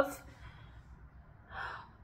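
A woman's breathing between phrases: a quick intake of breath just after she stops talking, then a soft breathy exhale about a second and a half in.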